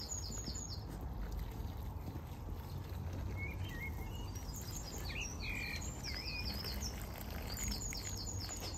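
Small birds singing outdoors: a quick run of high chirps at the start and again near the end, with a few lower, looser calls in the middle, over a steady low background rumble.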